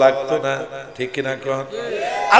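A man's voice chanting a recitation in a drawn-out, melodic style, with held notes in two phrases and a short break about a second in.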